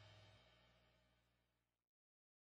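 Near silence: the faint dying tail of a pop-punk song's final chord, fading out and cutting to dead silence just before the end.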